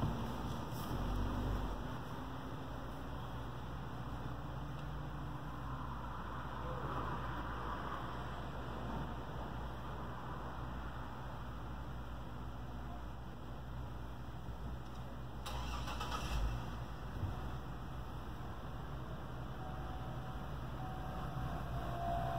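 Car engine idling steadily, heard from inside a car's cabin.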